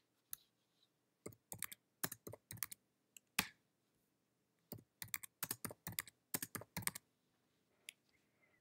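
Computer keyboard being typed in short bursts of a few keystrokes, including space and return presses, with pauses between the bursts. The clicks are quiet, and one stands out louder a little over three seconds in.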